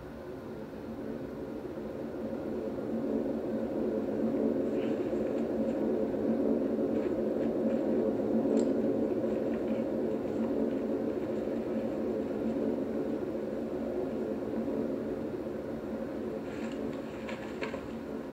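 Steady drone of bomber aircraft engines overhead during an air raid, swelling over the first few seconds and then holding. Faint rustles and snaps of undergrowth can be heard now and then.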